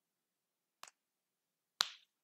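Two short computer mouse clicks: a faint one a little under a second in and a louder, sharper one near the end.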